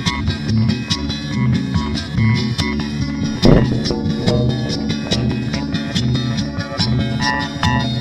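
Experimental guitar music: many quick plucked notes over a pulsing low end, with one loud hit about three and a half seconds in.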